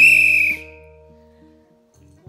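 A whistle blown once in a short, shrill blast of about half a second. It sounds over soft background music with held notes.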